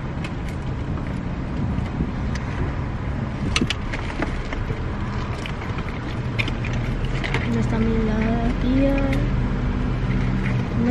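Steady low hum of an idling car heard from inside the cabin, with small clicks and rustles of handling. A voice talks in the last few seconds.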